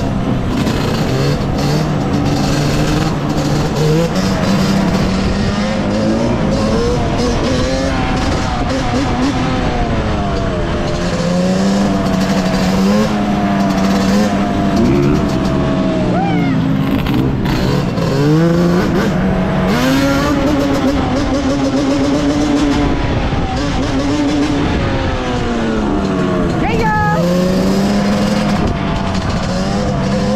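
Yamaha Banshee 350's two-stroke twin engine running at low speed, its pitch rising and falling every few seconds as the throttle is opened and eased off.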